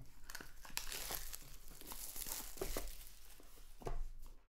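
Plastic shrink wrap being torn and peeled off a trading-card box, an irregular crinkling and crackling.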